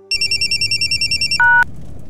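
Electronic phone ringtone: a loud, high-pitched, rapidly warbling trill lasting just over a second. It ends in a brief, lower beep.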